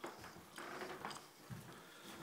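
Faint footsteps going down carpeted stairs: a few soft thumps about half a second apart, the last one the heaviest.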